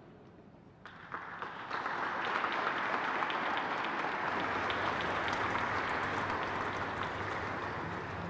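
Audience applauding: scattered claps start about a second in and build into steady applause.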